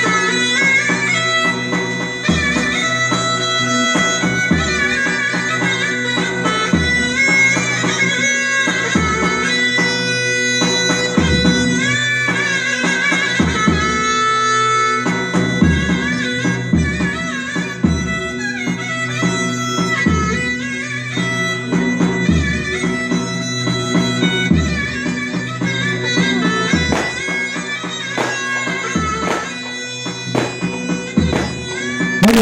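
Turkish folk dance music: a loud reedy wind instrument plays a winding melody over steady held notes, with a deep drum beating underneath.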